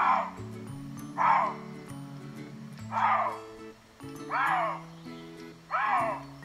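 Lynx calls played from an online video through a laptop speaker: five short yowls, each falling in pitch, about a second and a half apart.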